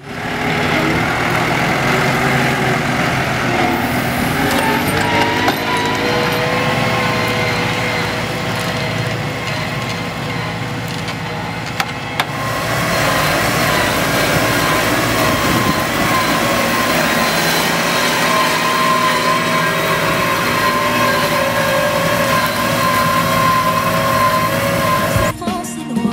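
Case Maxxum 110 EP tractor's diesel engine running steadily under load while pulling a mounted reversible plough through the soil, with a steady whine over it. The pitch rises a few seconds in, and the sound changes abruptly about twelve seconds in.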